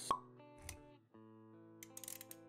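Intro music for an animated logo sequence: a sharp pop right at the start, a short low thud a little later, then held synth notes.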